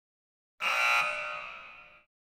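A ringing, many-toned sound effect that starts suddenly about half a second in and fades away over the next second and a half, its highest tones dying first.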